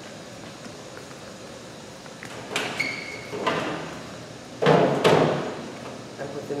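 Knocks and scraping of a dehydrator tray being handled and slid into a food dehydrator, the loudest about a second before the end, with a short high squeak or beep about halfway through.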